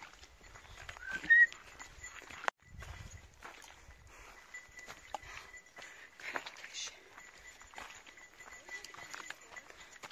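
Faint, irregular footsteps on a dirt hiking trail with light rustling, and a short rising chirp about a second in. The sound drops out for a moment about two and a half seconds in.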